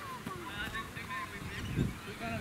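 Birds calling in a rapid series of short chirps and squawks, over low wind rumble on the microphone that swells briefly near the end.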